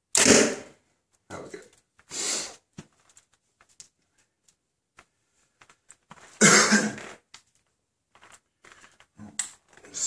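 A BowTech Octane compound bow is shot: a sudden loud crack as the string is released and the arrow hits the target close by, dying away within a second. Quieter rustles and small knocks follow, and a second loud noisy sound comes about six and a half seconds in.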